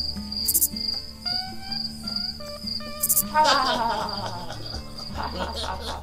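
Cricket-chirping sound effect, the comic 'crickets' of awkward silence after a bad pun: a steady pulsing high chirp over background music, with laughter breaking in after about four seconds.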